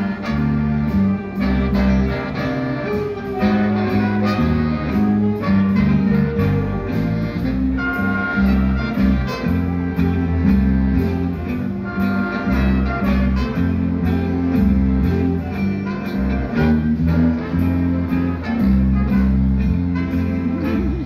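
A jazz big band playing live: saxophones and brass over a moving bass line, with a cymbal keeping a steady beat.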